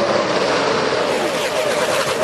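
NASCAR stock cars' V8 engines running flat out as the pack goes by: a loud high drone that, after about a second, bends up and down in pitch as individual cars pass.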